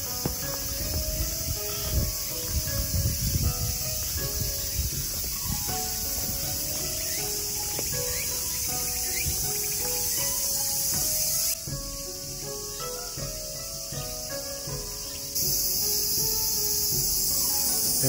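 A dense, steady, high-pitched chorus of summer cicadas buzzing in the trees, which drops in level for a few seconds in the second half. Soft low thuds of walking come in the first few seconds, and faint background music notes sound underneath.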